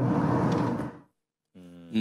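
Speech trailing off, a short dead silence, then a drawn-out "umm" from a voice near the end.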